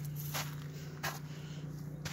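Two footsteps crunching on dry pine needles and grass, about half a second and a second in, over a steady low hum.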